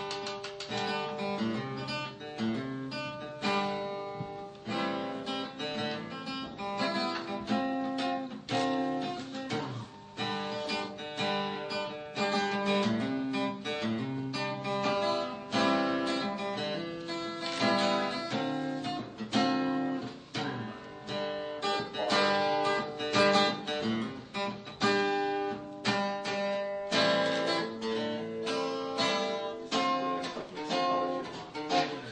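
Background music: plucked acoustic guitar playing a busy run of quick notes and strums.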